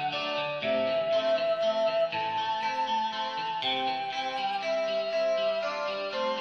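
Music: a simple tune of held melody notes over a guitar accompaniment playing chords underneath, illustrating an accompaniment made up from chord symbols.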